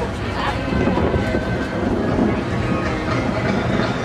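Wind noise on the microphone, a steady low rumble, with indistinct voices in the background.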